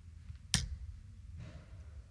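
A steel-tip dart striking a Winmau bristle dartboard once: a single sharp click about half a second in, over a faint low hum.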